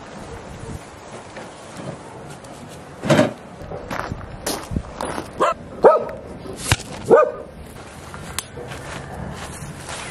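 A dog barking: a run of about seven short barks starting about three seconds in and lasting some four seconds.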